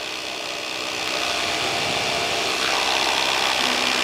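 Paramotor engine and propeller running steadily in flight, mixed with wind noise, slowly getting louder.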